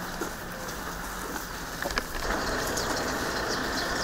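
Steady outdoor background noise with no speech, growing a little louder about halfway through, with a few faint high chirps near the end.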